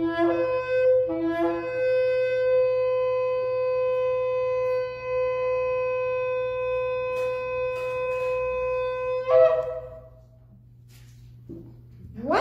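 A small shofar is blown. It gives short blasts stepping from a lower to a higher note, then one long steady note held for about eight seconds that breaks off with a brief upward squeak.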